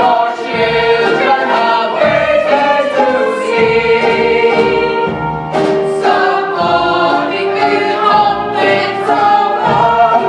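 A stage cast of mixed voices singing together in chorus, a loud, sustained choral melody.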